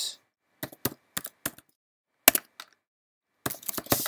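Typing on a computer keyboard: scattered keystrokes in short runs with silent gaps between them.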